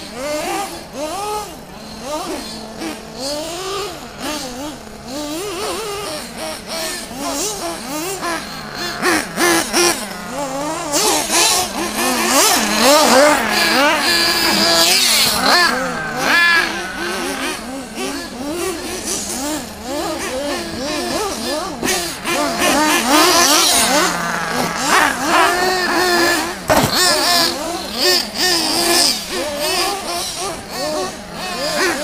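Several radio-controlled cars racing on a dirt track, their small engines revving up and down over one another. The revving is busiest about a third of the way in and again near three-quarters.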